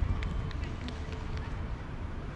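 Sounds of an outdoor amateur football match: players' voices calling across the pitch and a few short sharp knocks in the first half, over a steady low rumble.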